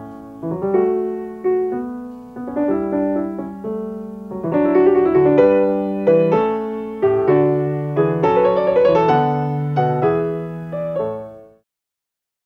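Solo piano playing a flowing melody over a bass line, each note struck and decaying. It winds down and stops shortly before the end.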